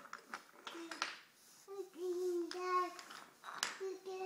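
A toddler making drawn-out, wordless vocal sounds in the middle, with a few sharp wooden clicks of toy train track pieces being handled in the first second and another knock near the end.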